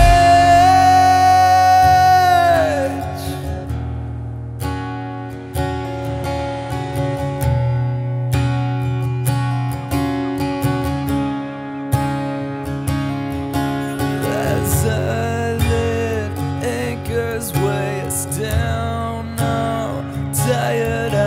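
A belted, held sung note that bends down in pitch and ends about three seconds in. Then a Yamaha acoustic guitar is strummed alone in steady chords.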